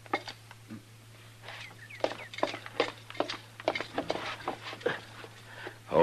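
Radio-drama sound-effect footsteps: a run of uneven knocks and light clicks, several a second, over the steady low hum of the old recording.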